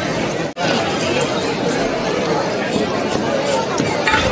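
Crowd of spectators chattering, a dense babble of voices with no single clear speaker, broken by a sudden brief gap about half a second in.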